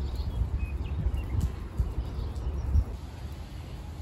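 Wind on the microphone, an uneven low rumble, with a few faint high bird chirps in the first second or so.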